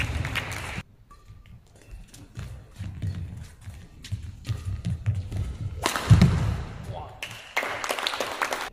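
Badminton rally: racket strikes on the shuttlecock and players' footfalls on the court mat as sharp clicks and thuds, with voices at moments. A heavier thud comes about six seconds in.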